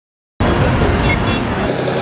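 Busy street noise: car traffic running past, with voices of people standing around. It cuts in abruptly about half a second in.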